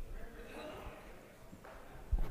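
Faint, distant voices chatting indistinctly.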